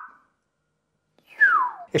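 A high whistle-like tone finishes a rising glide, then after about a second of silence a short whistle-like tone slides down in pitch.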